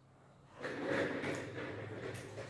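Office chair casters rolling across a tile floor, starting about half a second in and trailing off over a second or so.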